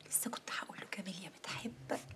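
A woman whispering in a hushed voice, close to another person.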